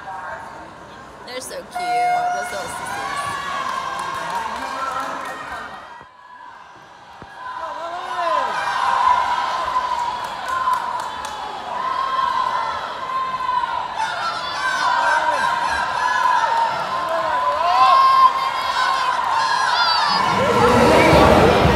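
Crowd of spectators calling out and cheering, many voices overlapping and echoing in an indoor pool hall, with a brief lull about six seconds in.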